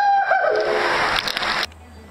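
A person yelling inside a rolling water-filled zorb ball, two rising-and-falling cries over the rush of water sloshing around the inside of the ball. The noise cuts off suddenly about one and a half seconds in, leaving a quieter low hum.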